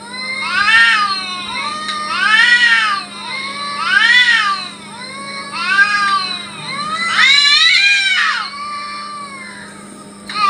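Domestic cats caterwauling in a fight standoff: a string of long yowls, one about every second and a half, each rising and then falling in pitch. The longest and loudest yowl comes near the end.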